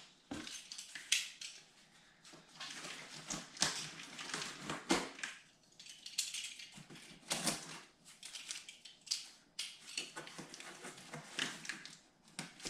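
Box cutter in use on a cardboard shipping box: clicks as the blade is handled, then the blade scratching through packing tape and scraping the cardboard in irregular short bursts.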